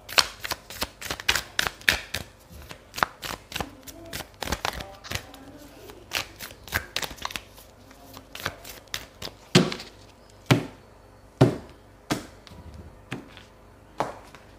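A deck of tarot cards being shuffled by hand: a quick run of light slaps and flicks of card against card, then about five louder single knocks, roughly a second apart, near the end.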